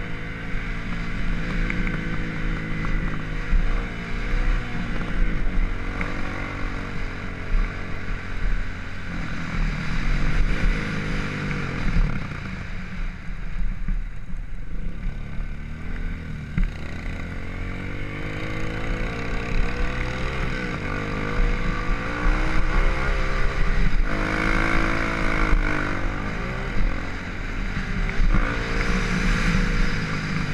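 Dirt bike engine heard up close from the rider's helmet, its pitch rising and falling over and over as the throttle is opened and rolled off. It goes quieter and lower for a few seconds around the middle, then climbs again in several strong upward sweeps.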